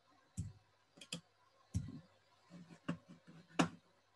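About half a dozen irregular sharp clicks and soft knocks from computer keys or a mouse being pressed, along with light desk-handling bumps.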